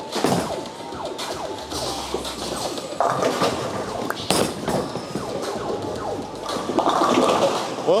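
Bowling alley din with other people's chatter and background music; about four seconds in a sharp thud as the Storm Ion Pro bowling ball is released onto the lane, followed near the end by the clatter of the ball hitting the pins.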